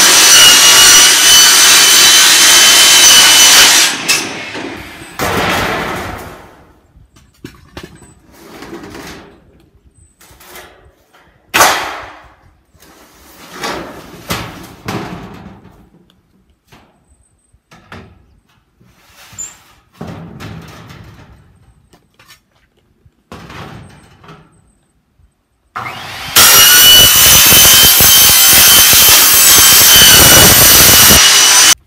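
Circular saw with a sheet metal blade cutting corrugated metal roofing: a loud, steady cut with a high whine that stops about four seconds in. About twenty seconds of scattered knocks and rattles from handling the metal sheet follow, with one sharp bang near the middle. The saw then starts cutting again near the end.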